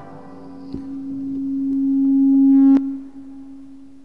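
A single low, steady tone starts with a click about a second in and swells steadily louder for about two seconds. Near the three-second mark it cuts off suddenly with a sharp click, leaving a faint low hum.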